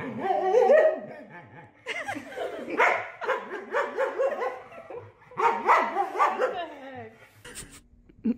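A husky-type dog vocalizing in play: wavering, whining yowls that rise and fall in pitch, in three bouts with short pauses between.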